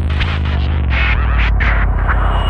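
Electro house/breakbeat track in a stripped-down passage: a deep, steady synth bass drone with noisy percussive hits about twice a second over it.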